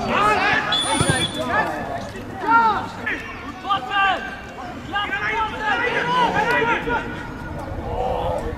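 Players shouting and calling to each other across a football pitch, in loud, high-pitched bursts, with a couple of sharp knocks in the first second.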